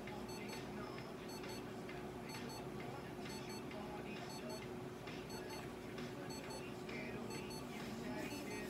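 An electronic beeper sounding quick, high-pitched double beeps about once a second, steadily, over a constant low hum.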